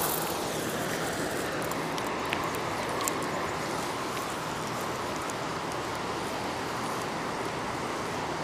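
Steady rushing of flowing river water, with a couple of faint clicks about two and three seconds in.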